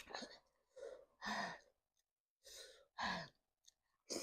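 A woman breathing hard and sighing through an open mouth: two breaths in and out, each with a softer draw followed by a louder voiced out-breath, the louder ones about a second and a half in and three seconds in.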